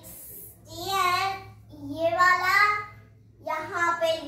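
A young girl singing in a sing-song voice, three drawn-out phrases with gaps between them, over a low steady hum.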